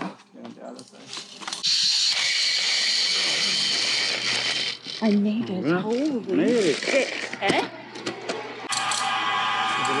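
Zip-line trolley rolling along a steel cable with a steady high whir, heard twice, with a woman's voice calling out in between.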